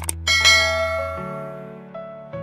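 Two quick mouse-click sound effects, then a bright notification-bell chime that rings out and slowly fades, from a subscribe-button animation. Soft sustained background music chords play underneath and change chord about halfway through.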